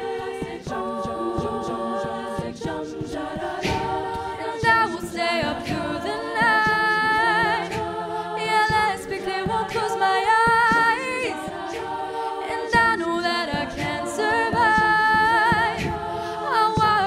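An all-female a cappella group singing held chords without instruments, with a solo voice wavering in vibrato above them from about five seconds in. Vocal percussion keeps a beat under the voices.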